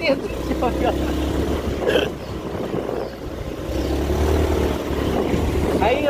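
Motorcycle engine running steadily as the bike rides along a dirt trail, a low, even rumble with the engine note swelling slightly partway through.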